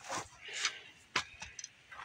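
A few soft rustles and short clicks, handling noise as the camera is moved.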